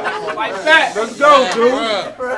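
Speech only: a person's voice talking in short phrases.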